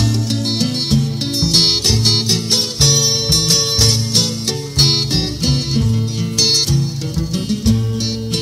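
Instrumental passage of a Purépecha pirekua recording: acoustic guitars strumming and plucking steadily, with no singing.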